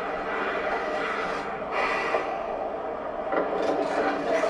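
Horror film trailer soundtrack played back: a steady noisy ambience with faint held tones underneath and no dialogue.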